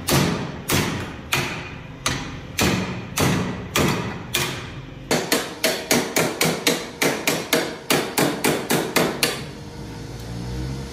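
Hand hammer striking a red-hot steel bearing ring held in a bench vise, forging it into shape: sharp metallic blows with a short ring after each, about every half second at first, then quicker, about three a second from halfway, stopping just before the end.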